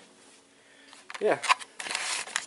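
Quiet room tone with a faint steady hum, a single spoken "yeah", then a short rustling clatter near the end.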